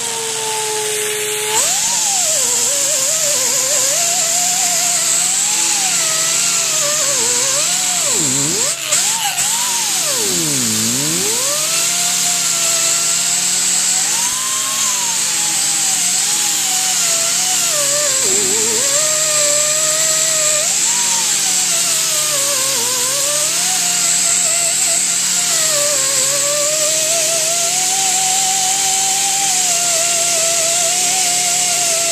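Power tool spinning a wire wheel against a rusty steel truck frame: its motor whine wavers in pitch and drops sharply a few times as the wheel is pressed into the metal and bogs down, over a steady high scratching hiss.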